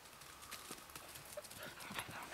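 Faint patter of a dog's paws running over dry fallen leaves, a scatter of light rustling footfalls.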